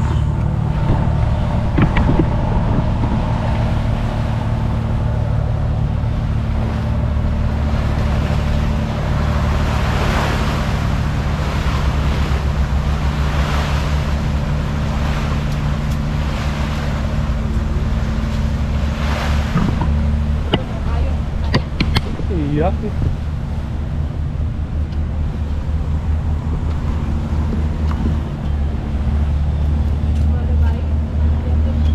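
Steady low engine hum and road noise heard from inside a moving road vehicle, with the noise swelling and fading several times near the middle.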